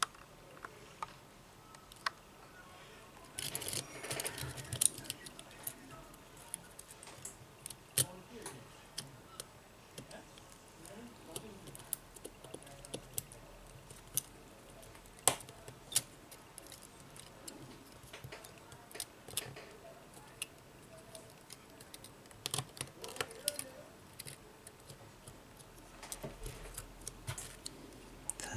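Scattered sharp little clicks and light scraping of plastic and metal phone parts being handled and pressed by fingers as a Sony Xperia M4 Aqua's system board is seated in its housing.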